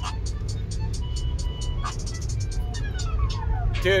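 A hip-hop beat playing loudly over a truck's stereo inside the cab: heavy, steady bass under evenly spaced hi-hat ticks and a few held synth notes.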